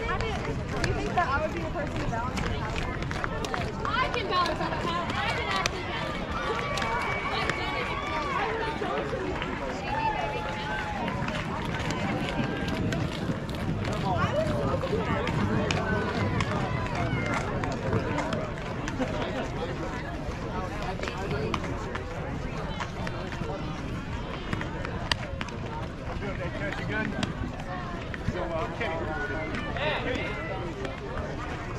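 Indistinct voices at a distance, chatter and a few drawn-out calls, over a steady low rumble, with a few sharp clicks.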